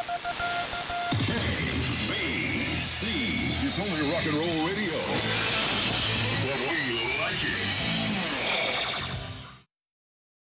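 Shortwave AM broadcast received on a software-defined radio: music with a voice over it, thin and band-limited, with static hiss above. It cuts off suddenly near the end.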